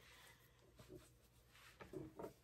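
Near silence: room tone, with a few faint soft ticks near the end.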